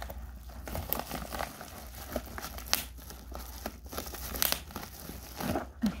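Crinkling and crackling of a bubble-lined padded mailer and its plastic-wrapped contents being handled and pulled apart, with sharp crackles scattered through an even rustle.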